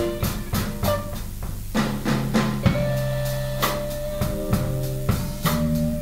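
Live blues band playing an instrumental passage with no vocals: electric guitars over a drum kit keeping the beat.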